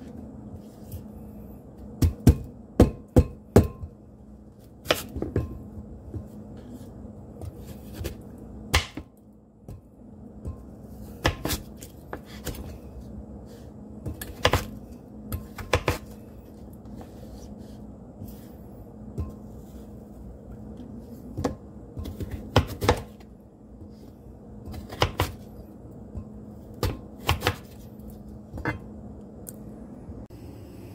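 Chef's knife chopping raw sweet potato on a cutting board: sharp knocks of the blade meeting the board, coming in irregular clusters, with a quick run of four strikes a couple of seconds in.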